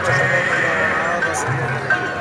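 Live Punjabi folk ballad music in a gap between sung lines: a wavering, sliding melodic line continues over low, repeated thuds.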